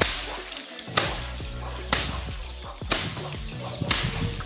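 A wooden stick beating a pile of dry pigeon pea pods on concrete, five sharp strikes about a second apart with a rustle of dry pods between them: threshing, knocking the dried peas out of their pods.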